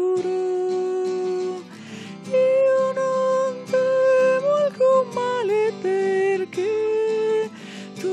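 A church hymn: a sung melody of long held notes, with acoustic guitar accompaniment.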